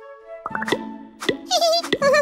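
Children's cartoon music: a short rising chime, then a soft backing chord with three plopping pops about 0.6 s apart, and high warbling sounds that start about one and a half seconds in.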